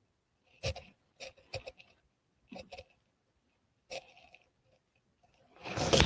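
Mostly silence broken by about seven faint, short clicks and snippets of noise, spread over the first four seconds.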